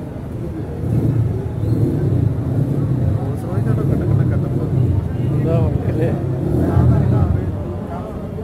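A car engine running with a deep, pulsing rumble that swells about a second in and eases near the end, with people's voices over it.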